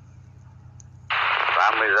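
A two-way radio transmission cutting in suddenly about a second in: a voice speaking Russian, thin and narrow-band with static, over a low steady hum.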